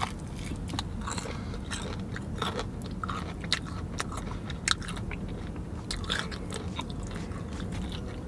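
Close-up chewing of a breaded fried chicken gizzard: irregular crunchy clicks and crackles as the tough piece is worked in the mouth, over a low steady background hum.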